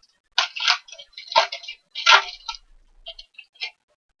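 Plastic wrapper of a Mosaic cello trading-card pack crinkling as it is torn open: a few sharp crackling rustles in the first half, then softer rustles near the end.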